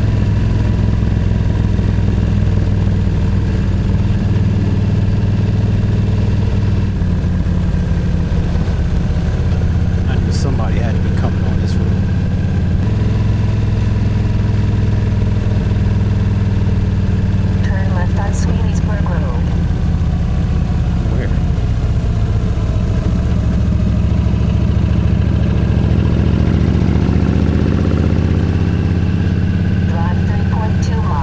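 Yamaha V Star 1300's V-twin engine running under way at steady road speed, heard from the rider's seat. Its note shifts in pitch a few times as the speed changes.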